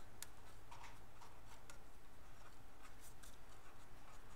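Pen writing on paper: short, faint, irregular scratches of the pen strokes over a low steady hum.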